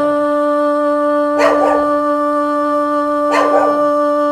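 A steady held tone sounds throughout, with three short, sharp, noisy calls evenly spaced about two seconds apart.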